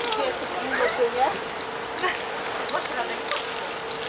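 Faint voices of bystanders talking over a steady hiss of outdoor background noise, with a constant hum.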